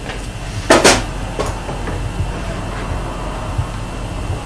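A sharp double knock about a second in, then a lighter click, as hard equipment on the workbench is handled, over a steady low hum.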